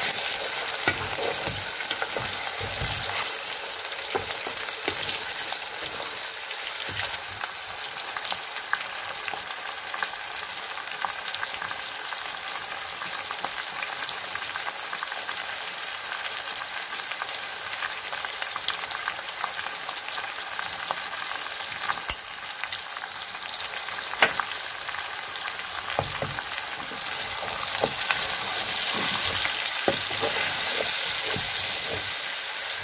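Cow's feet and onions frying in hot oil in an aluminium pot: a steady sizzle, stirred with a wooden spoon. A few sharp knocks of the spoon against the pot come near the end.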